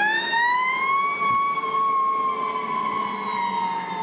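Ambulance siren on a wail: one slow sweep that rises for about a second, holds, then slowly falls away.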